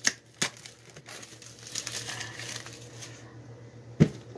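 Clear plastic shrink wrap being torn and peeled off a Pokémon card tin, crinkling, with two sharp snaps near the start.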